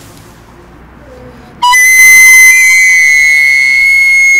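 A shrill, very loud whistle starting about one and a half seconds in: after a brief lower note it holds one high note, stepping slightly higher about a second later.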